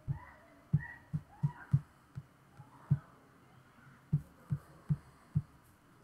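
About a dozen soft, dull taps on an iPad's glass screen, irregularly spaced in two quick clusters, as a stylus or fingertips tap and drag on the canvas.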